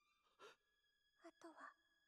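Near silence: room tone, with a few faint breathy sounds about half a second in and again near the end.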